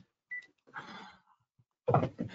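A phone gives one short, high electronic beep, followed by a brief breathy sound; a man starts speaking near the end.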